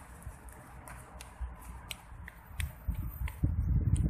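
Footsteps on paving stones, a few sharp steps a second, with low buffeting noise on the microphone growing louder over the last second.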